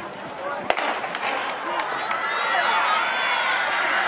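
Starting pistol fired once, under a second in, starting a kids' sprint race. A crowd's shouting and cheering then builds and grows louder.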